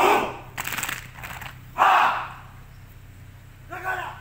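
A large group of men shouting together in a drill chant: one loud unison shout at the start and another about two seconds in, with a quick run of sharp hits between them. Chanting voices start up again near the end.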